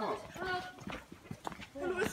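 A person's voice, brief and faint with no clear words, followed by scattered light clicks; the voice starts up again near the end.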